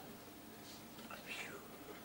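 Quiet room tone with a few faint, short breathy sounds.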